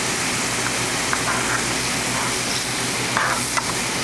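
Mushrooms in stock sizzling steadily in a hot skillet as brown stock (demi-glace) is poured in and stirred with metal tongs, with a few light clicks of the tongs against the pan.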